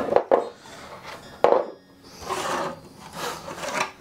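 Hard white plastic armour pieces handled on a workbench: a few knocks at the start, a sharp tap about one and a half seconds in, then rubbing and scraping as the pieces are moved about.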